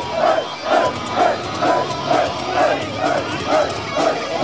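Metal-concert crowd shouting together in a steady rhythm, about two shouts a second.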